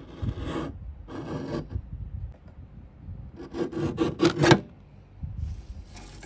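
Paper rasping against a paper trimmer as a print is squared up and cut: four separate scraping strokes. The longest and loudest, a quick run of rough strokes, comes about three and a half seconds in.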